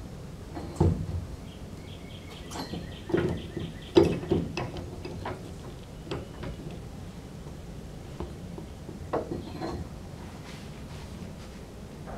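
Pipe wrench being worked on the rusted threaded collar of a 1935 Ford's gas filler neck: a handful of sharp metal knocks and clanks from the wrench and its cheater pipe, the loudest about four seconds in, as the seized collar is forced to break loose.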